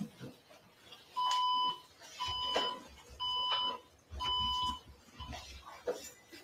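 An electronic beeper sounding four identical beeps at one steady pitch, each about half a second long, repeating once a second.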